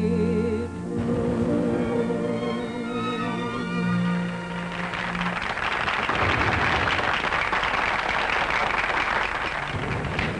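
A woman singer ends a song on long held notes with vibrato over the band's accompaniment. An audience then applauds from about halfway through.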